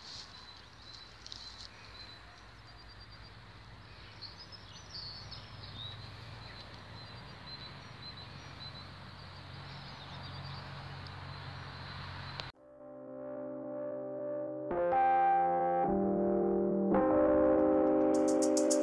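Faint open-air ambience with birds chirping for about twelve seconds, then a sudden cut to background music with held chords that grows louder toward the end.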